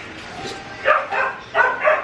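A dog barking: four short, high-pitched barks in quick succession in the second half.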